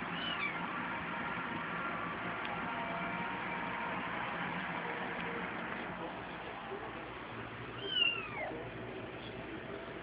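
Ten-day-old kittens mewing: a short high-pitched mew at the start and a louder falling mew about eight seconds in.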